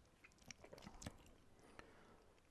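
Near silence, with a few faint mouth clicks and lip smacks close to a microphone as a whisky taster savours a sip.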